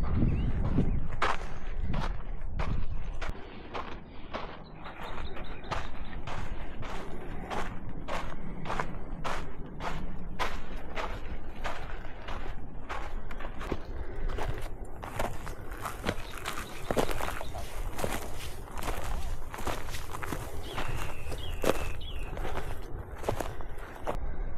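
Walking footsteps on a sandy, gravelly dirt trail at a steady pace, about two steps a second.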